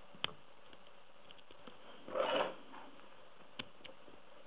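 Dimple pick and thin tension wrench working the pins of an AZBE HS6 dimple lock cylinder while it is still locked: a few light metallic clicks, with a short louder rasp about two seconds in.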